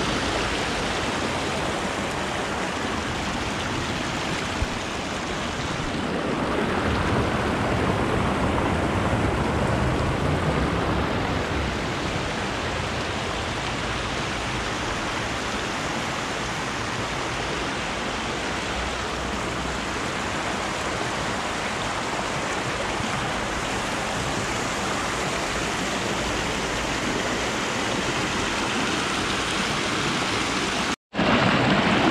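Shallow river water rushing steadily over a rocky riffle, a constant rushing hiss. It grows a little louder for a few seconds about a third of the way in.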